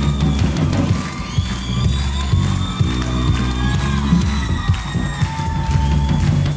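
Live rock band playing an instrumental passage: drum kit and bass guitar keep a steady beat under a higher lead line that slides between notes.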